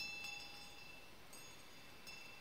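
A small metal chime struck, ringing high and bright and fading away. It is struck again, more softly, a bit over a second in.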